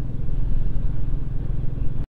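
Motorcycle engine running steadily at cruising speed, heard from the rider's seat with wind rushing over the microphone.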